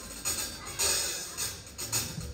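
Live rock band in a quiet, sparse passage: a few irregular drum and cymbal hits ring out over a low, held bass note.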